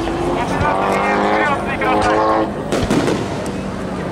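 Aerial fireworks bursting overhead, with sharp reports about half a second in and near three seconds, over steady crowd noise. A voice close to the microphone carries through the first half.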